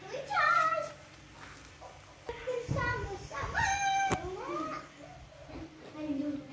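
A baby macaque giving a series of high coo calls, each rising and falling in pitch, with a sharp click about four seconds in.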